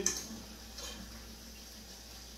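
A metal spoon clinking against a saucepan of cooked pumpkin cubes, with a fainter scrape just under a second later; otherwise only quiet kitchen background.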